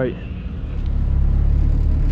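Low, steady rumble of a car engine idling, growing louder about a second in.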